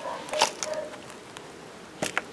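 Faint handling sounds of a chrysanthemum root ball and loose potting soil worked in gardening gloves, with a sharp click about half a second in.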